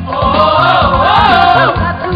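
A song with a woman singing: she holds one long, wavering note over a steady beat and bass line.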